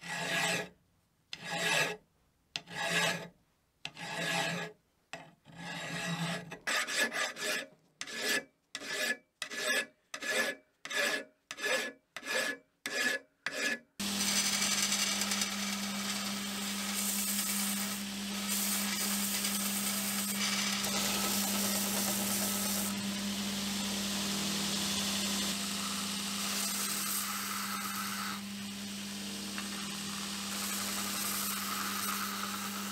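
Hand file rasping across a cast lathe part held in a vise, one stroke about every second, quickening to about two strokes a second. About halfway through it gives way abruptly to a belt grinder running continuously, a steady motor hum under the hiss of the belt.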